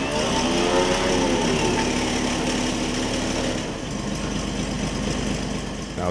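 The engine of an old military vehicle under restoration, running just after being started. Its speed rises and falls back over the first couple of seconds, then it settles into a steady idle.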